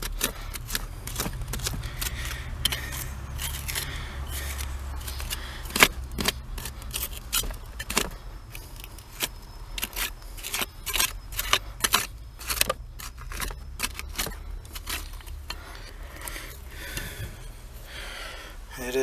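Small hand tool scraping and picking at hard-packed, glass-strewn dirt around a buried glass bottle: irregular scrapes and sharp clicks, the sharpest about six seconds in, over a low steady rumble.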